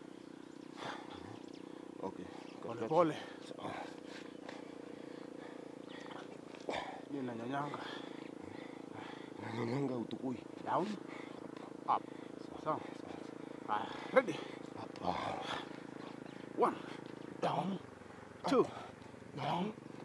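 Short bursts of voice and breath from people doing push-ups and floor exercises, coming every second or two over a steady low hum.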